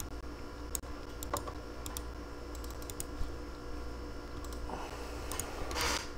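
Scattered, irregular clicks of a computer keyboard and mouse being worked, over a low steady hum.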